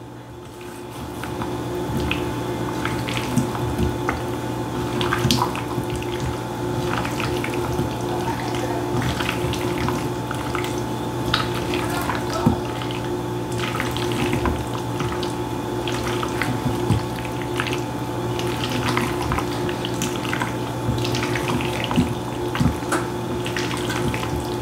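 A spatula folding boiled potato cubes into a mayonnaise dressing in a stainless steel bowl: irregular soft scrapes and clicks of the spatula in the food and against the metal. A steady low hum runs underneath.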